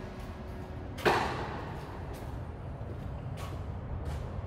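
A sudden sharp whoosh-like hit about a second in that dies away quickly, over a steady low rumble.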